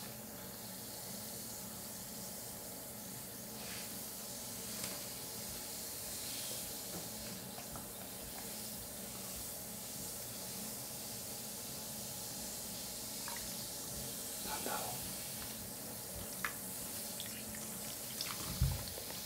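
A fizzing bath ball dissolving in a basin of water, a steady faint hiss. Now and then there are small splashes and drips as hands move in the water.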